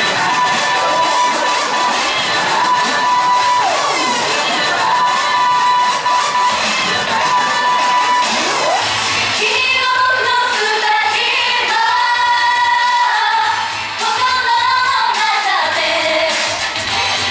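Pop song over a PA at a live idol-group performance. A synth line with sliding notes opens, a pulsing bass beat comes in about nine seconds in, and women's voices singing into microphones follow.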